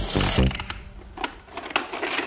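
Background music stops about half a second in. Then come a few scattered clicks and rattles of hard plastic toy parts being handled on a plastic activity cube.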